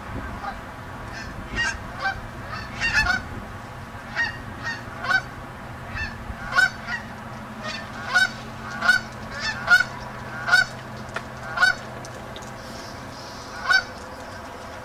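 A flock of Canada geese on open water honking: a long run of short calls, some overlapping, that come more often and louder in the second half.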